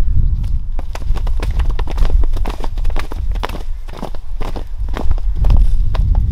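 Wind buffeting the microphone, a low rumble throughout, with a run of irregular sharp taps and clicks through the middle.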